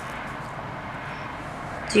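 Steady background hiss of room noise, with no distinct event standing out.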